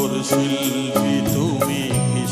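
Live band music with a steady beat and a wavering melody line, in the closing bars of a Bengali film song.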